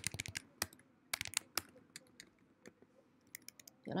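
Computer keyboard being typed on: quick runs of key clicks in the first second and a half, then scattered single keystrokes.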